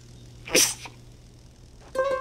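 Cartoon llama voicing one short, breathy nasal burst like a sneeze, about half a second in.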